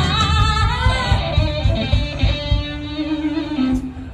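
Live blues band playing: a woman sings lead, with wavering vibrato on her held notes, over electric guitars and a low, beating rhythm section. The band thins out just before the end.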